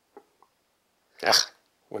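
A man's short chuckle a little over a second in, after two faint mouth clicks.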